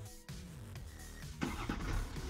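Electronic background music, with the BMW 630d's 3.0-litre straight-six diesel starting about one and a half seconds in, cranking up to a rough burst of noise as remote-controlled parking is activated from the key.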